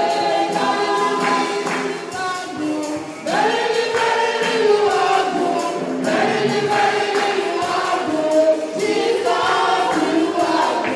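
A woman singing a gospel praise song through a microphone, holding long drawn-out notes, over light percussion accompaniment.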